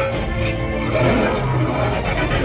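Action-film soundtrack playing over a cinema hall's speakers, mostly score music with a heavy low end, as picked up by a phone in the auditorium.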